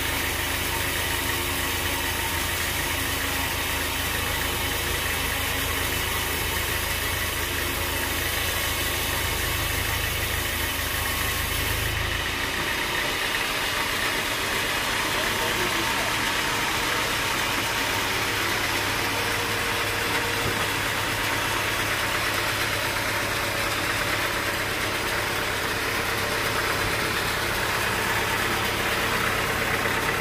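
Band sawmill running, its blade cutting lengthwise through a large teak log: a steady machine noise of motor and blade. The low hum changes suddenly about twelve seconds in, then runs on steadily.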